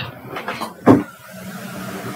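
Marker pen on a whiteboard: a single short knock about a second in, then a faint steady rubbing as the pen moves across the board.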